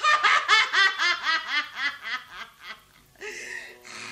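A woman gidayū chanter laughing in character, a stylized jōruri laugh: a run of short 'ha-ha' syllables about four a second that thins out after two seconds, then a short held vocal tone near the end.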